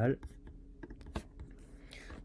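A handful of faint, sharp clicks at a computer, the loudest a little past a second in.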